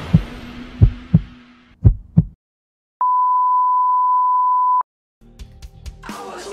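Heartbeat sound effect in a music track: low paired thuds, two double beats, under the fading tail of the music. After a short gap comes a steady high beep, like a heart monitor flatlining, held for about two seconds and cut off sharply, then faint clicks and rumble as the music comes back.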